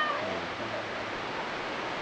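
Steady wash of sea surf, with a short high-pitched vocal sound at the very start.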